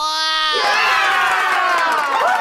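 A group of children cheering and shouting together, a "yay" celebration sound effect: one held shout at the start, then many overlapping excited voices.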